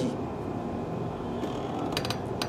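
Steady background noise of the room, an even hum with no clear source, and a few faint clicks near the end.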